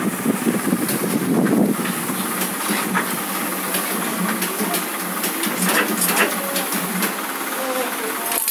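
Small single-colour offset printing press running: a steady mechanical clatter with frequent irregular clicks.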